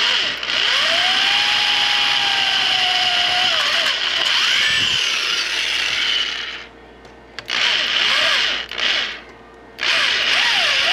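Electric drill with a twist bit widening the vent holes in a water heater thermostat's metal housing to 5/16 inch, its pitch rising and falling as the bit bites. It runs for about six and a half seconds, stops, runs again briefly about eight seconds in, and starts once more near the end.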